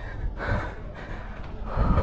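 A man breathing hard, in short gasping breaths, from the exertion of hurrying up a long flight of stone steps.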